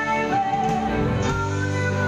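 Live band music led by an electric guitar, with sustained notes and chords.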